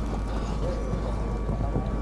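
Wind buffeting the microphone, with the hoofbeats of a show-jumping horse cantering on sand footing.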